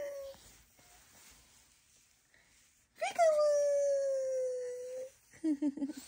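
Baby's long, high-pitched squealing coo about three seconds in, lasting about two seconds, its pitch sliding slowly down.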